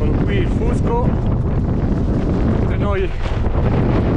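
Strong wind buffeting the microphone, a loud, constant low rumble.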